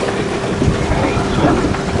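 Boat engine running steadily under way, with wind buffeting the microphone and water rushing past the hull.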